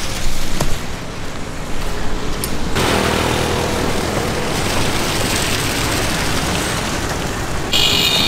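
Road traffic noise, rising suddenly about three seconds in and staying loud, with a short vehicle horn beep near the end.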